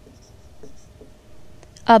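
Faint scratching of handwriting, a run of short writing strokes on a surface.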